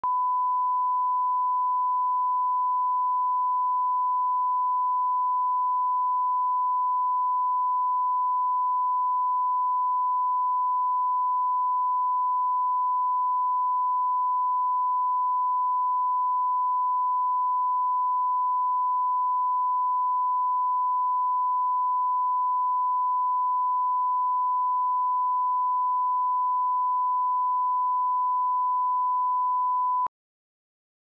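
Steady 1 kHz sine-wave reference tone, the line-up tone that accompanies SMPTE colour bars for setting audio levels at the head of a broadcast tape. It holds one unchanging pitch and cuts off abruptly at the end.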